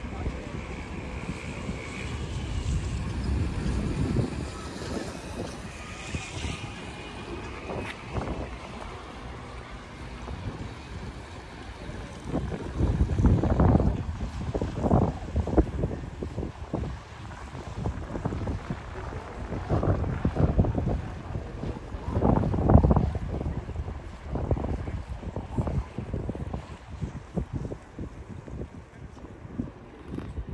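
Wind buffeting the microphone in uneven, rumbling gusts that grow stronger and more frequent in the second half.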